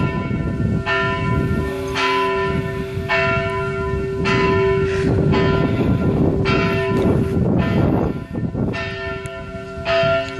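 The two middle bells of Strängnäs Cathedral, tuned to D and F, swinging and striking in turn at about a stroke a second, their tones overlapping in a continuous ringing hum with a brief lull around eight seconds in. This is helgmålsringning, the Saturday-evening ringing that announces the coming holy day.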